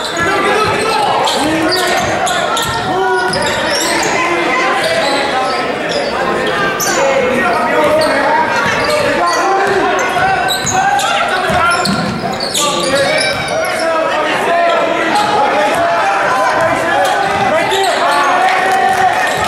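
Basketball game in a gym: many overlapping voices of spectators and players calling out, with a basketball dribbled on the hardwood floor.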